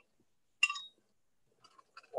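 A single short clink of a spoon against a glass jar about half a second in, followed by a few faint ticks near the end; the rest is gated silence.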